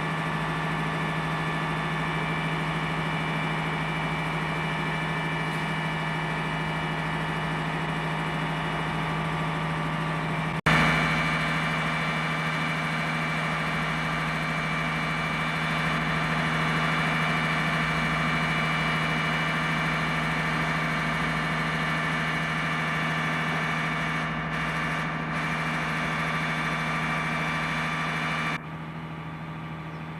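Fire engine's motor running steadily, a constant drone. About a third of the way in a sharp click comes and the drone is louder after it, and near the end the level drops.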